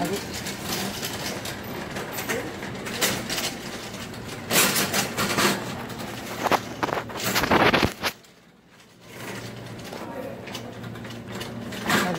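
Handling noise from a phone carried along with a plastic shopping basket while walking: rustling and clicks, with two loud scraping surges around the middle. A sudden short lull comes a few seconds before the end, then a low steady hum.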